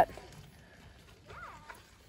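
A quiet stretch with faint light sounds of a plastic fork picking at cooked trout in a metal camp frying pan, and a faint short pitched sound about one and a half seconds in.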